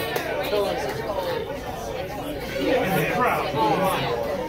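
Indistinct chatter of several people talking at once in a bar room, with no music playing.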